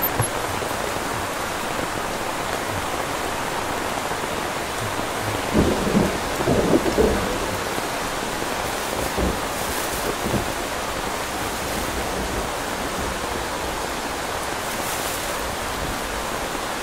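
Heavy rain falling steadily, with a louder rumble of thunder about six seconds in.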